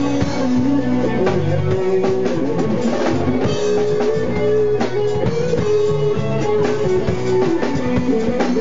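A four-piece band playing an instrumental groove live on a Yamaha drum kit, electric bass, Korg keyboard and electric guitar. Held melody notes step between pitches over a steady drum beat.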